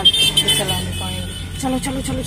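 A Suzuki car's engine running with a steady low hum, heard from inside the cabin; a voice comes in near the end.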